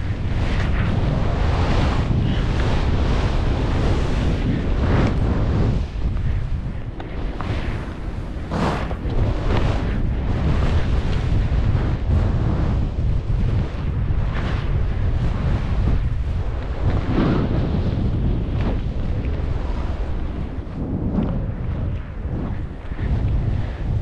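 Wind buffeting the microphone of a skier's body-mounted camera during a fast powder descent, a heavy steady rumble. Over it the skis hiss through deep snow, surging with each turn every second or few.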